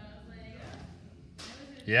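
Faint indistinct voices in a large room, a brief noise about one and a half seconds in, then a loud shout of "yeah" at the very end.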